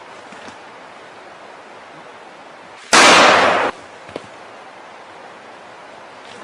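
A single loud gunshot from a long gun about three seconds in, the report lasting under a second, followed by a faint click.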